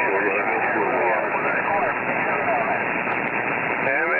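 Radio receiver tuned to 27.375 MHz in the CB band, putting out steady static with a weak, hard-to-follow voice faintly under the noise.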